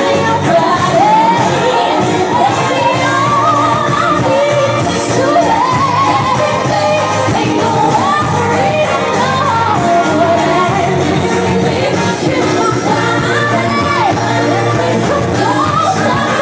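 Loud pop song with a high, melismatic female lead vocal over a steady beat, played through a club sound system in a large room.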